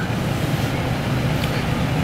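Car engine and road noise heard from inside the cabin as the car drives slowly: a steady low hum under an even rushing noise.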